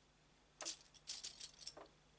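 A hand picking among small hard sewing items on a tabletop: a quick run of rattling clicks starting about half a second in and lasting just over a second.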